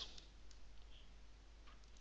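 Faint computer keyboard keystrokes and mouse clicks over near-silent room tone, as values are typed into a software field.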